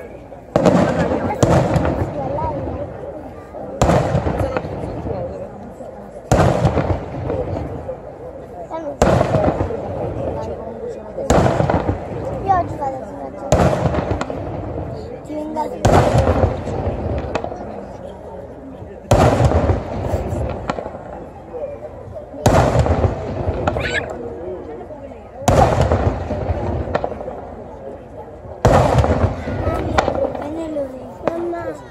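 Daytime fireworks display: aerial shells bursting with loud bangs about every two to three seconds, each bang trailing off in a rumble and crackle.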